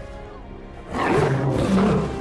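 A lion roaring loudly about a second in, over film background music.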